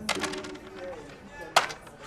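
Backgammon pieces clacking on the board during play: a quick rattle of clicks at the start, then one sharp clack about one and a half seconds in.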